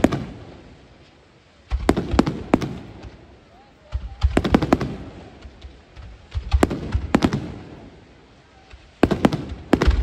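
Fireworks display: salvos of aerial shells going off in clusters of several quick bangs, a cluster about every two to two and a half seconds, each dying away in an echoing rumble.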